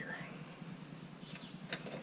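A few faint metallic clicks in the second half as a hand works the latch on the dump trailer's metal battery-and-pump box, over a quiet background.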